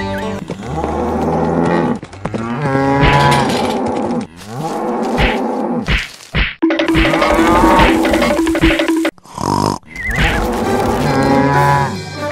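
Cattle mooing: several long moos in a row with short breaks between them.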